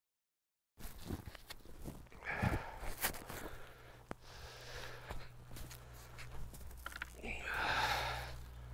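Footsteps on grass with scattered clicks and knocks of handling tools and a spray gun, over a steady low hum. The sound cuts in about a second in.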